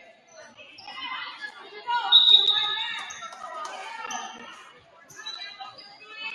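Players' and spectators' voices calling and cheering in an echoing gymnasium, loudest about two seconds in, with a volleyball bouncing on the court floor.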